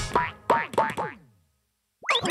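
Cartoon bouncing-ball sound effect: four springy boings, each falling in pitch, coming quicker and fainter until they die away, like a ball settling after bouncing.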